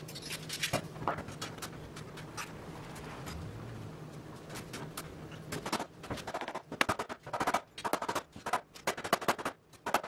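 Steel sash clamps being handled and set across a door frame during a glue-up, with a few clanks early on over a faint low hum. From about halfway through comes a run of sharp, irregular knocks as the clamp is tightened and a mallet taps the frame.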